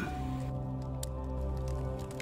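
Quiet background music of held, steady tones, with faint scattered crackles.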